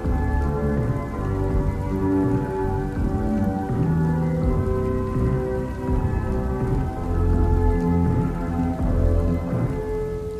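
A playlist song with slow, held notes and deep bass, mixed with a steady rain ambience.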